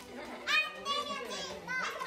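Several people shouting and shrieking excitedly in a group game of rock-paper-scissors, with high-pitched cries about half a second in and again near the end.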